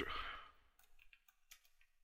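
A few faint computer keyboard keystrokes as characters are typed, after a short breathy noise at the start.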